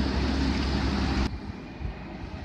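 Steady loud hum of a Newag Impuls electric multiple unit's equipment as it stands at the platform, cutting off suddenly about a second in to a quieter station hall where another train is approaching in the distance.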